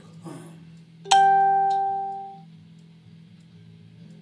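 A single bright, pitched note struck about a second in, ringing out and fading over about a second and a half, over a steady low hum.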